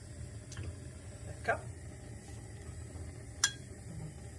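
A spoon scooping thick tomato sauce from a glass jar into a small steel saucepan, with a faint click early and one sharp clink about three and a half seconds in, over a low steady hum.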